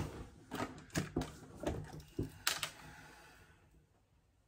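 Light clicks and knocks of makeup items and a plastic hand mirror being picked up and handled on a table, about seven in the first three seconds, then dying away.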